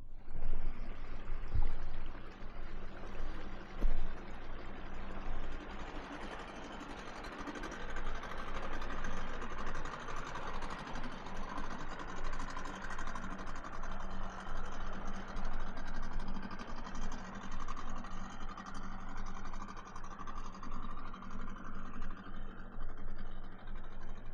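A boat's engine running steadily, a low hum under a rushing noise of water and air.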